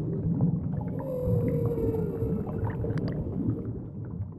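Underwater sound effect: a low watery rumble with small bubbly clicks, and a whale-like call that begins about a second in and slides slowly down in one long note. The sound fades out at the end.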